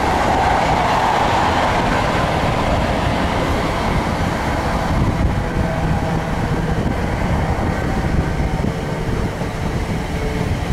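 Steady running noise of High Speed Trains at speed: rumble of wheels on rail with a rush of air. It is loudest in the first two seconds as coaches pass close by, then continues as wind and track noise from an open window of a moving HST.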